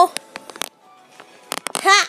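Plush toys and the phone being handled: a few scattered clicks and knocks, a short lull, then a quick cluster of clicks near the end, where a brief high-pitched voice sound rises.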